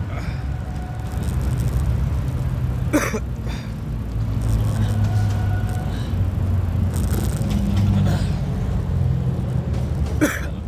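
Steady low rumble of wind and road noise at the phone's microphone on a moving bicycle, with a single sharp click about three seconds in.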